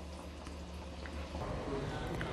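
Faint steady hiss with a low hum underneath; the hum changes about one and a half seconds in.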